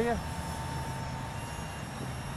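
Wind rumbling on the microphone, with a faint steady high whine from a distant 30 mm electric ducted fan driving a small RC jet in flight.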